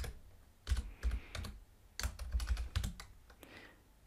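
Typing on a computer keyboard: two short runs of keystrokes, the first starting under a second in and the second about two seconds in.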